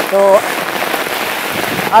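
Steady rain falling on wet pavement and puddles, an even hiss.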